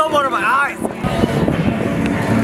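A high, wavering voice cry in the first second, then the babble of many voices over a low, steady rumble.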